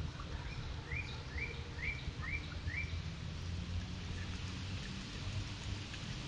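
A songbird singing a phrase of five quick, evenly spaced chirps about a second in, over a steady low background rumble.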